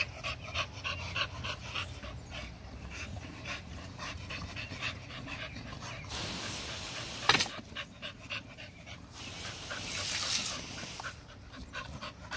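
American Bully dog panting close by, with one sharp click about seven seconds in.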